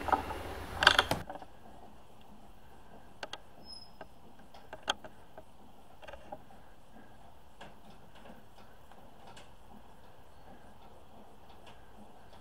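Winch cable drawing a riding mower up wooden ramps onto a trailer: faint, irregular clicks and creaks, spread over several seconds, with no motor running.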